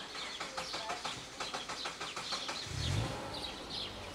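Small birds chirping repeatedly, with a run of quick sharp clicks over the first half and a short dull thump about three seconds in.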